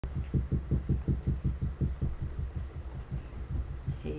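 A rapid, even run of low thumps, about five a second, that grows weaker after about two seconds.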